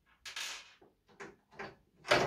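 Hands working a case fan loose from a PC case: a short scraping rustle, then two faint clicks.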